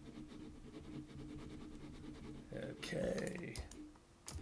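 Faint room tone with a steady low hum, then a man's brief wordless vocal sound about two and a half seconds in, lasting about a second.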